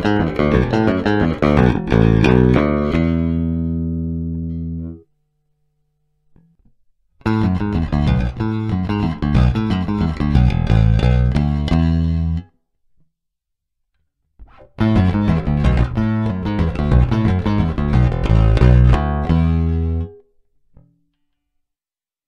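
Fender Geddy Lee Jazz Bass played fingerstyle, clean and direct with no amp, the same short riff played three times with pauses between. The first pass, ending on a held note that fades, is on the stock Fender bridge pickup; the later passes are on the Seymour Duncan Apollo split-coil pickups.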